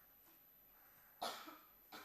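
A single short cough about a second in, otherwise near silence.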